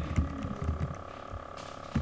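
Computer keyboard being typed on, a short run of scattered key clicks over a steady electrical hum.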